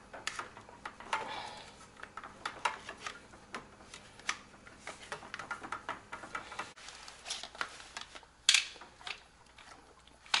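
Irregular small plastic clicks and rustles from a filter-housing wrench and the sediment filter housing of a reverse osmosis system as the housing is turned loose, with one sharper click late on.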